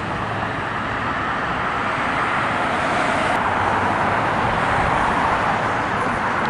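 Steady hiss of road traffic, an even wash of tyre and engine noise with no single vehicle standing out.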